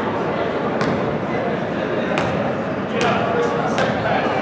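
Indistinct crowd and bench chatter in a gymnasium, with four sharp knocks spread unevenly through it: a basketball bounced on the hardwood court while a free throw is set up.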